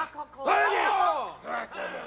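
Men's wordless yells and grunts: a loud, drawn-out call about half a second in, then shorter grunts.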